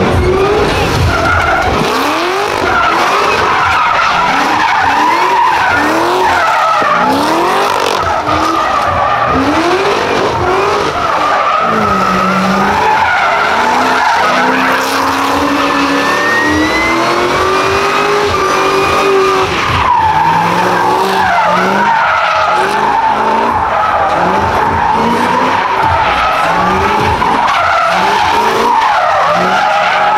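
Cadillac CTS-V's V8 revving in repeated rising sweeps, about one a second, over a steady squeal from the spinning rear tyres as the car drifts in tight circles. Midway the revs hold steadier for several seconds before the short sweeps return.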